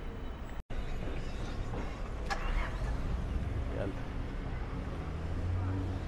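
City street traffic: a steady low rumble of passing cars and buses. The sound drops out completely for a split second well under a second in, at a cut in the recording.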